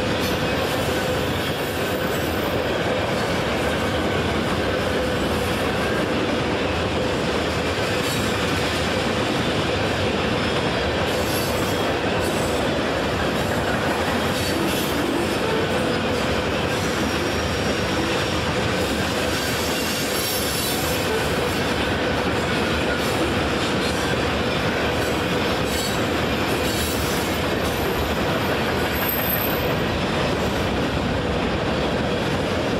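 Freight train cars (tank cars and covered hoppers) rolling past steadily, a continuous rumble and clatter of steel wheels on rail, with a faint steady squeal running under it.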